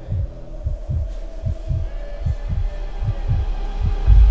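Soft low thumps in a steady pulse, often in pairs, about two or three a second, under a steady droning hum. A much louder, deeper rumble comes in right at the end.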